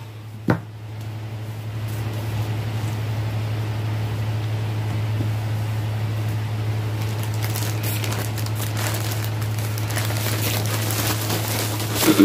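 Stretchy fabric rustling steadily as a garment is handled and folded, with a few brief crackles, over a constant low electrical hum. A single click sounds about half a second in.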